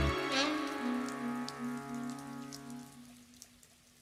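The last held note of a song's instrumental ending fading out, its bass stopping abruptly at the start, over a rain sound effect of hiss and scattered drops that fades away with it over about four seconds.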